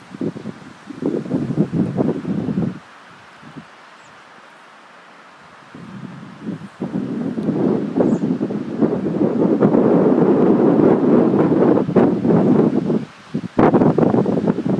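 Wind gusting across the microphone outdoors, a rough, uneven rumble: one gust about a second in lasting under two seconds, then a longer, louder stretch from about six seconds in that runs until a brief lull near the end.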